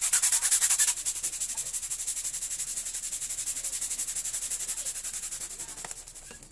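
Handheld plastic balloon pump worked rapidly to inflate a foil star balloon: a fast rhythmic hiss of air with each stroke. The strokes are loudest for the first second, then go on more softly.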